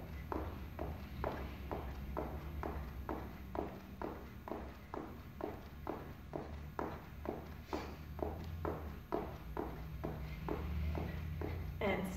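Sneakers hitting a rubber gym floor in a steady, even rhythm of about three footfalls a second, the alternating footwork of split jacks. A low steady hum runs underneath.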